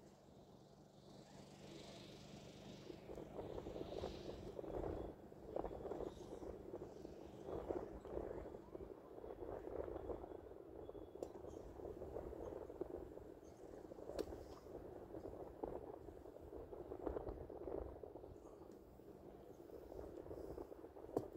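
Faint wind buffeting the microphone in uneven gusts, with a faint low hum in the first half and a few light ticks.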